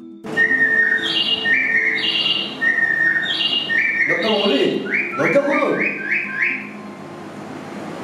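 A person whistling a short tune: a phrase of high and low notes played twice, then a quick run of about six short rising notes, tailing off after about six and a half seconds.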